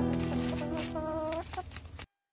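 Soft instrumental music with held notes fading out, and a hen clucking once about a second in.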